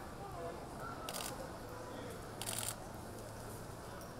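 Camera shutters firing in two short rapid bursts, about a second in and again halfway through, over faint background chatter and hum.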